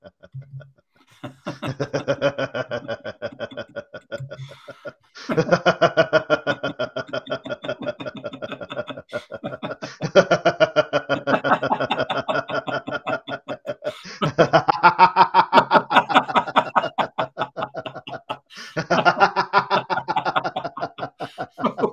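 Two men laughing in a laughter-yoga exercise: deliberate laughter for no reason that starts gentle and grows into hearty, continuous laughing. It comes in long runs of rapid 'ha-ha' pulses, broken every few seconds by a short pause for breath.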